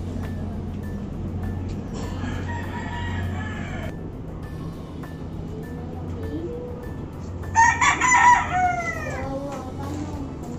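A rooster crowing: one loud crow about three-quarters of the way in that drops in pitch at its end, with a fainter call earlier, over a steady low hum.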